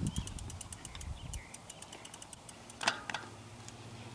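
Road bike's rear freehub ticking rapidly as the wheel rolls while the bike is coasting, over a low rumble for the first second or so. A sharper click comes about three seconds in.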